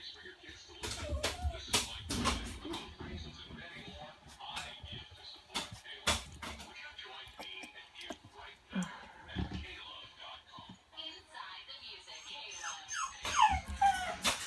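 A litter of young puppies squirming and settling into a pile on a blanket, with scattered soft knocks and rustling. A few high, gliding puppy whimpers come near the end.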